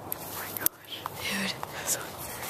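Whispering close to the microphone, with one sharp click under a second in.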